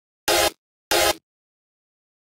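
Two short, harsh synthesizer stabs from a Serum patch, about two-thirds of a second apart. Each is a quarter-second buzz of noise over a pitched tone.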